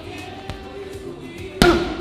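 A single hard punch thudding into a heavy bag about one and a half seconds in, with a lighter knock earlier, over steady background music.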